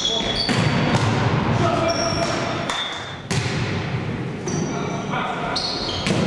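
Indoor volleyball rally in a large echoing sports hall: several sharp smacks of hands on the ball and short high squeaks of sneakers on the court floor, over players' and spectators' voices. The sound cuts abruptly a little after three seconds in.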